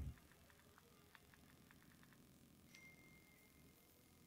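Near silence: room tone, with a few faint ticks in the first half and a faint, short, high ding about three-quarters of the way through.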